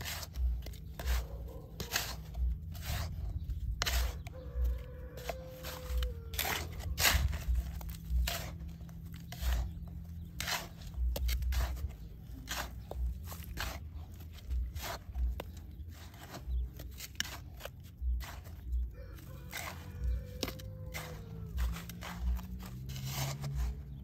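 A small plastic scoop digging and scraping into a pile of coarse construction sand and gravel, with repeated gritty scrapes and crunches about once or twice a second.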